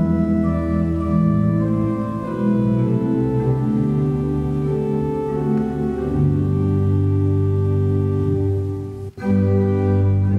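Church organ playing a hymn tune in sustained chords, the music of a congregational hymn, with a brief break in the sound about nine seconds in before the chords resume.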